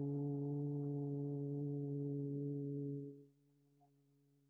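A man humming one steady low note, held level and then stopping abruptly about three seconds in.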